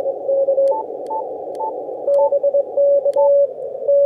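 Morse code (CW) from a weak summits-on-the-air station received on a Yaesu FTdx5000MP HF transceiver: a single pitched tone keyed on and off in dots and dashes over band hiss, squeezed into a narrow band by the radio's 600 Hz roofing filter and CW filtering. A few faint clicks with brief higher blips come through as well.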